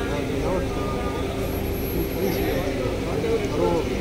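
Indistinct chatter of several voices talking over one another, over a steady low background rumble.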